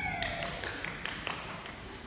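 A dog's claws clicking on a bare concrete floor as it trots: a run of light, irregular taps.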